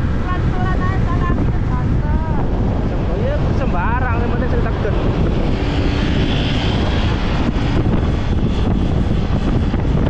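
Wind rushing over the microphone of a moving motorcycle, mixed with engine and road noise. Brief fragments of a voice come through in the first few seconds.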